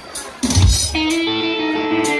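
Live funk band music led by electric guitar. After a brief quieter moment, the band comes in about half a second in, with held notes over a low beat.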